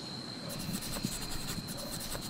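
Rural outdoor ambience of insects: a steady high-pitched whine with a stretch of rapid chirring pulses starting about half a second in.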